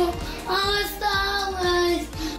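A high voice singing a slow melody in a few long held notes, stopping sharply at the end.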